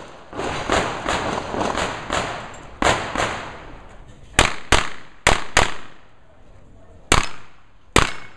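Pistol shots fired in quick pairs, each pair about a third of a second apart, with a sharp crack and a short echo off the range walls; a single shot comes near the end. Softer, duller knocks fill the first couple of seconds before the loud shots begin.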